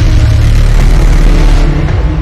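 Loud, dark horror-style intro music, a dense cinematic swell over a heavy low rumble.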